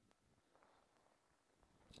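Near silence, with only a faint low hiss.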